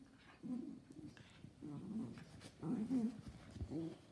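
Two schnauzers, a miniature and a giant, play-fighting and making short growly grumbles and whines in several bursts.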